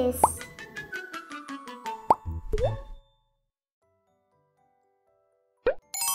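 Cartoon logo jingle: a quick descending run of short plucked notes, dotted with three quick rising 'plop' sound effects, fading out after about three seconds. After a silence, one more short rising blip near the end.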